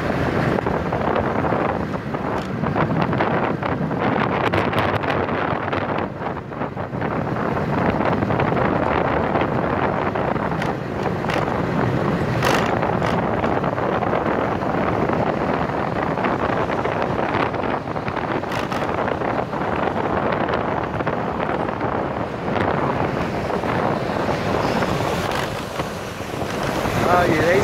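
Wind rushing over the microphone on top of the steady engine and tyre noise of a motorbike travelling at speed along a highway, easing briefly about six seconds in.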